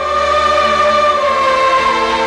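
Dramatic background music: a choir holding long notes, the top voice slowly falling in pitch.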